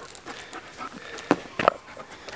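A dog panting, with a couple of short, breathy pants late on.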